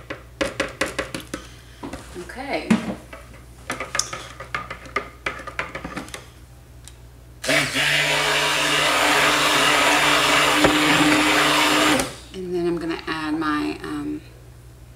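Liquid is poured into a plastic pot of oils, with small splashes and knocks. About halfway in, an Epica stick blender starts and runs for about four and a half seconds at a steady pitch, mixing the lye solution into the soap oils, then cuts off suddenly.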